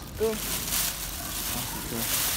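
Plastic bags rustling and crinkling as hands rummage through a black plastic carrier bag holding smaller clear plastic bags.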